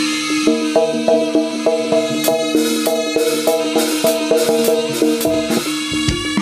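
Live jaranan gamelan music: bronze gong-chime instruments strike a quick repeating pattern of pitched notes over a held low tone, with sharp drum strokes throughout.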